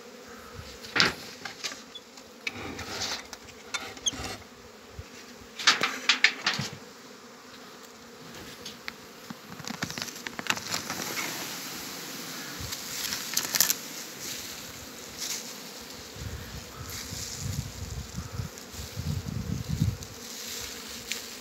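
Honeybees buzzing around an opened hive, with sharp clicks and knocks as the hive's cover and frames are handled, loudest about a second in and again around six seconds.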